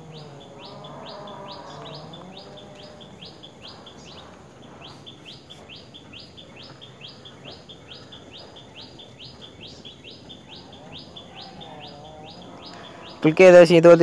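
Background chirping: short high chirps repeated steadily, about three a second, with a brief gap a few seconds in, over faint voices. A man starts speaking near the end.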